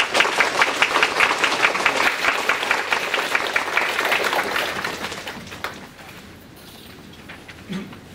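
Audience applause: a roomful of people clapping steadily for about five seconds, then dying away.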